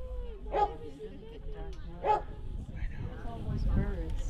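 Dogs barking: two sharp barks about a second and a half apart.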